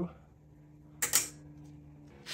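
Two sharp metal clicks close together about a second in, from the coaster brake arm and its clamp being pushed into place by hand at a bicycle's rear axle, over a faint steady hum.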